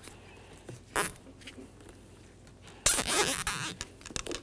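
Nylon zip ties being pulled tight around a shock absorber's protective dust boot, ratcheting through their locks: a short zip about a second in and a longer, louder zip near three seconds.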